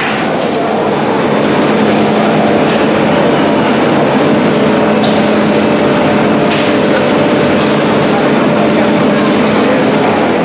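Steady hum of shoe-factory machinery running in a large production hall, a constant noise with a couple of held pitched tones and a few faint brief ticks.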